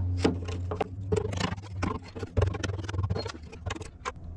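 Hammer and steel scraper chipping blistered paint off aluminum: a string of irregular sharp taps and scrapes as flakes crack loose, under a steady low hum. The paint is lifting because water got under it and corroded the aluminum.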